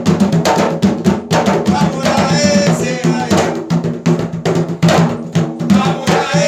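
Two Puerto Rican bomba barrel drums (barriles de bomba) played with bare and gloved hands, a fast, dense run of sharp slaps and open tones, several strokes a second.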